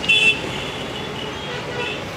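Steady road traffic noise with a vehicle horn sounding briefly just after the start, its high tone trailing off faintly over the next second or so.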